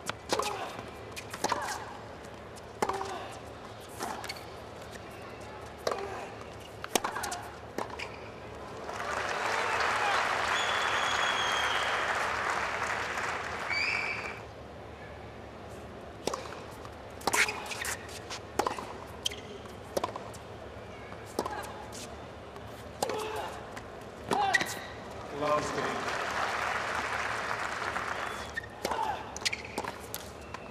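Tennis rallies: a racket strikes the ball back and forth about once a second, with the ball bouncing on the court. Twice a rally ends in crowd applause. The first round of applause cuts off suddenly.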